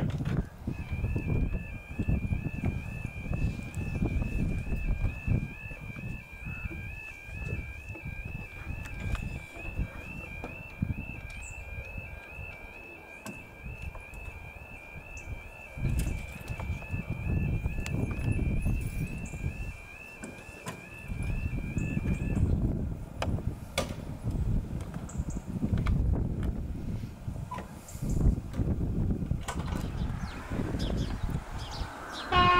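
UK level crossing yodel alarm: a steady two-tone warble sounding while the red lights flash and the barriers lower, which stops about two thirds of the way through once the barriers are down. A low rumbling noise runs underneath.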